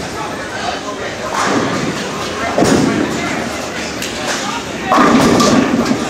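Bowling alley din: background chatter with thuds and knocks of balls and pins. Near the end a louder stretch comes as a bowling ball is released onto the wooden lane and rolls away.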